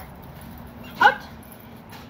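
A dog gives one short, sharp bark about a second in.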